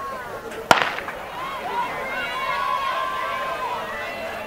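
Starter's pistol fired once, a single sharp crack about a second in that signals the start of a sprint race. Spectators' voices and shouts follow.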